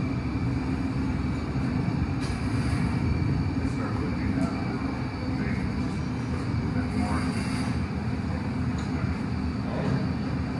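Glassblowing furnace and glory hole running with a steady low rumble, and a few faint clinks of metal tools.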